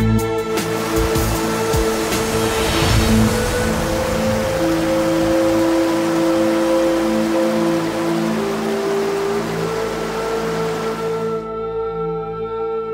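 Calm background music of long held tones. Over it is the steady rush of a rocky mountain stream tumbling over boulders, which cuts off suddenly near the end.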